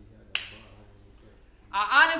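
A single sharp snap about a third of a second in, with a short ring after it. A man starts speaking near the end.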